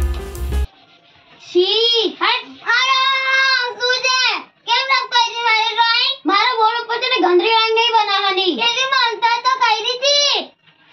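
Upbeat background music cuts off under a second in; then a child's high-pitched voice goes on in long held and gliding notes, sing-song rather than plain talk.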